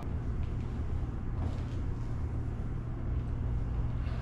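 Steady low rumble with a faint hiss, unchanging throughout, with no distinct knocks or footfalls standing out.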